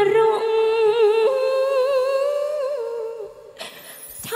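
A female vocalist sings long, held notes with a wavering vibrato in a Khmer sentimental song, the backing band nearly dropping out. Her voice fades out near the end, followed by a short hissy burst.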